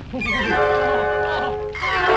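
Orchestral score of a 1931 sound cartoon. After a brief lull, a short wavering low note sounds, and then the band comes in with held chords.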